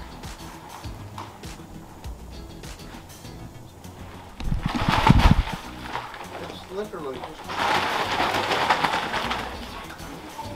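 Soft background music, then bursts of rustling and scraping from about halfway, the loudest just before the middle and a longer one near the end: a dog tugging and dragging debris across a dirt barn floor.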